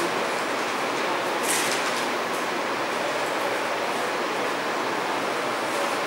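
Steady background hiss of room noise, with a brief rustle about one and a half seconds in.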